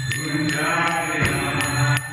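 Devotional kirtan chanting over a steady low drone, kept in time by hand cymbals (karatalas) struck about three times a second.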